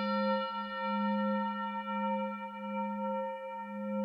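A struck metal chime rings on steadily: a strong low hum with several fainter, higher overtones above it, wavering gently in loudness.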